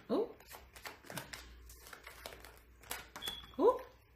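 A deck of tarot cards being shuffled by hand: an irregular run of soft card clicks and slaps as the cards are cut and passed between the hands.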